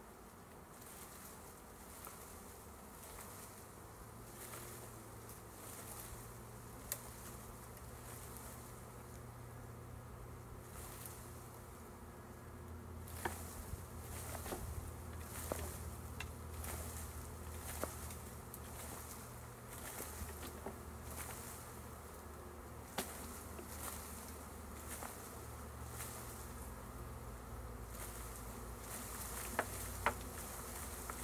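A swarm of honeybees buzzing steadily as their branch is shaken, with scattered sharp clicks. The hum gets a little louder about halfway through.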